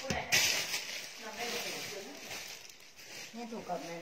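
Rustling and crinkling of clothing and plastic packaging as a knitted sweater is pulled from a pile and handled, with a sharp rustle just after the start. Soft, low speech comes in and out.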